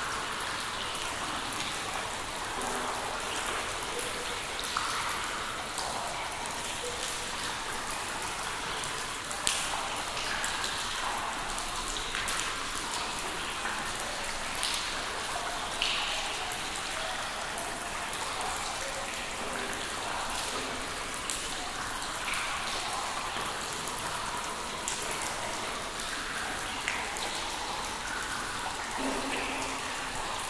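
Water drops falling in a cave: many irregular small drips over a steady wash of water noise, with a few louder single drops standing out, the loudest about a third of the way through.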